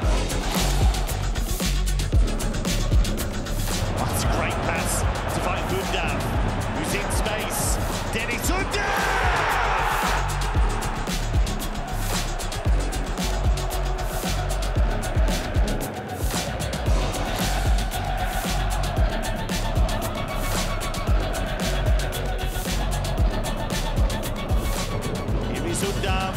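Background music with a steady beat and deep bass.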